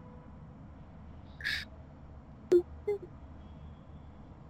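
Faint, barely audible murmuring from a person over a video call: a breathy hiss, then a click and two short, soft low syllables over a steady low hum.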